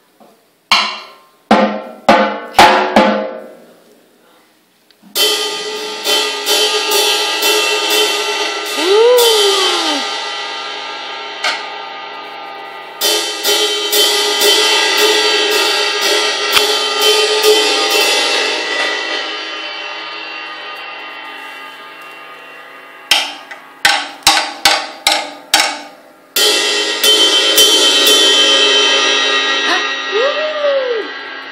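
A drum kit struck irregularly by a toddler. It starts with a few scattered drum hits, then cymbals are struck over and over and left ringing in a long wash that slowly dies away. Another short run of separate hits follows, then more cymbal crashes near the end.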